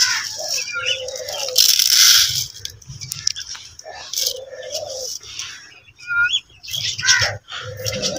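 Doves cooing three times, low and rounded, among short high chirps of small cage birds. About a second and a half in, the loudest sound is a brief rushing rattle of millet seed being scooped and poured by hand into a feeding tray.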